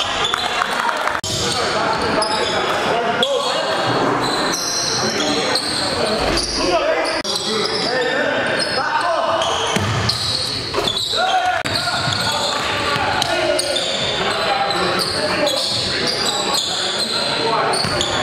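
Indoor basketball game sound in a gym: a ball bouncing on the hardwood court and players' voices, echoing in the hall.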